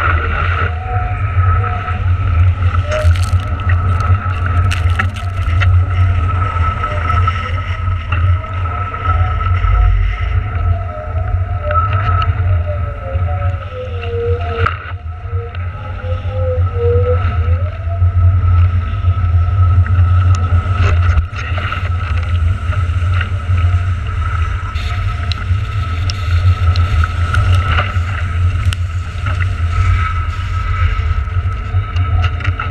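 Wind buffeting a board-mounted camera's microphone and water rushing past a kite foilboard riding at speed, with a steady high whine running through it and a few short clicks and splashes.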